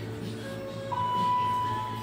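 Elevator's electronic signal tone: one long, steady beep that starts about a second in and cuts off suddenly, over background music.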